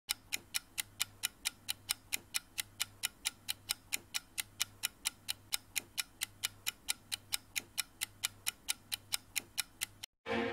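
Clock ticking sound effect: fast, even ticks, about four to five a second, over a faint low hum.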